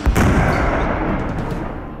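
A cartoon boom sound effect that hits sharply right at the start and trails off in a fading rumble over the next two seconds, with background music underneath. It goes with a glowing cartoon figure swelling into a muscle-bound form.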